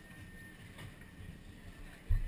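Faint background noise with a low rumble and a thin steady high tone.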